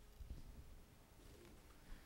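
Near silence: the room tone of a lecture hall in a pause between speakers.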